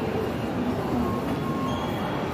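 Steady rumble of a busy shopping-mall interior, with a few faint, brief high tones over it.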